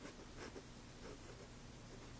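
Fine steel nib of a Zebra V-301 fountain pen writing on Rhodia paper, a faint scratching of short pen strokes. The nib is kind of scratchy.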